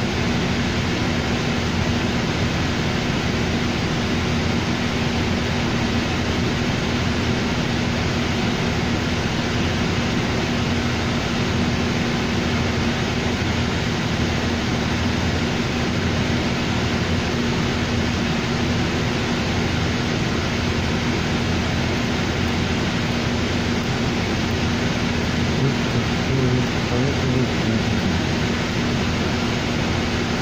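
Cabin noise inside a New Flyer D40LFR diesel transit bus: the engine and ventilation give a steady, even drone with a constant low hum.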